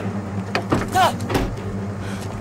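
A car's engine idling with a steady low hum, and a short vocal exclamation about a second in.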